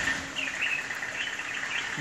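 Outdoor ambience of a steady high insect drone with a few short bird chirps about half a second in.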